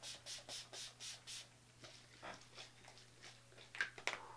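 Pump-mist makeup finishing spray spritzed onto the face in about six quick, faint hissing puffs, roughly four a second, over the first second and a half.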